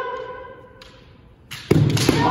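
A kendo fencer's kiai, a held, high-pitched cry that fades out within the first second. About one and a half seconds in comes a loud, sharp strike: the crack of a bamboo shinai landing, together with a foot stamp on the wooden floor.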